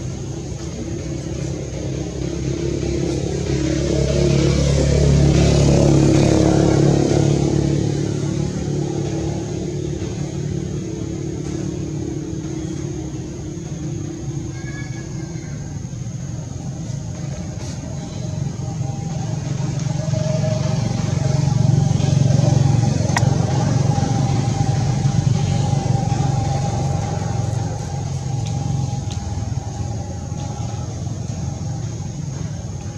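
Motor vehicles passing: a low engine rumble swells and fades about four seconds in and again about twenty seconds in, over a thin steady high-pitched whine.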